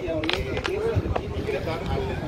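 Background voices of bystanders talking, with a few short clicks and low rumble underneath.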